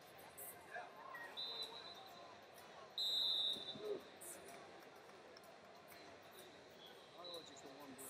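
A referee's whistle: one short, steady blast about three seconds in, with a fainter, shorter whistle from elsewhere in the hall just before it, over the low hubbub of the arena.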